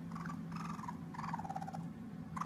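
Orphaned baby raccoon crying for its mother: three short, high whimpering calls, the last one longer and falling in pitch, over a steady low hum.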